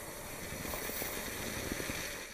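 Steady hissing outdoor noise with faint irregular rustling, fading out just after the end.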